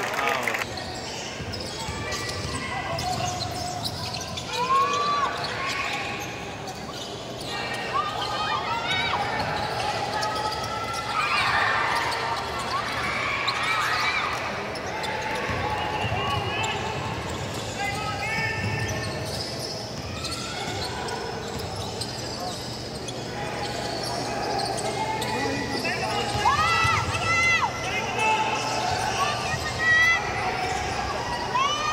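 Live basketball game in a gymnasium: a ball dribbled and bouncing on the wooden court, and sneakers squeaking in short high squeals, over the hall's constant din of spectators and players talking and calling out.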